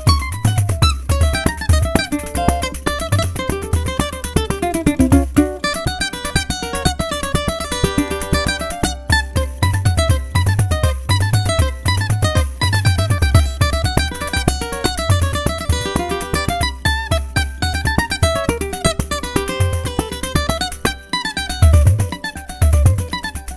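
A cavaquinho plays a fast choro melody in quick rising and falling runs of plucked notes. Under it a pandeiro keeps a steady pattern of low thumps and jingle strokes.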